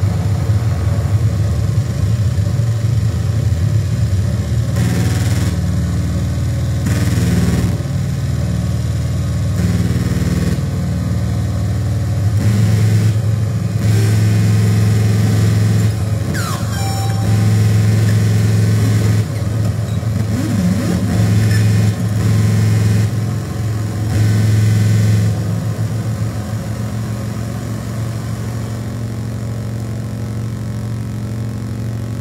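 Live hardcore punk band playing through loud, heavily distorted guitar and bass in a low, droning riff that shifts in blocks, with stretches of hiss and a sliding tone about halfway through.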